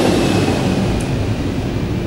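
Steady low rumble of passing traffic, easing slightly toward the end, with one faint click about a second in.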